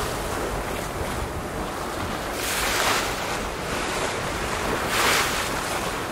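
Wind buffeting the microphone over choppy open water, with waves washing and splashing. Two louder washes come about two and a half seconds in and again about five seconds in.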